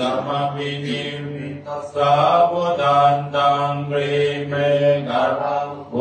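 A Buddhist monk chanting Pali blessing verses (Buddhist paritta chant) on a steady, low, monotone pitch, in long phrases broken by brief pauses for breath.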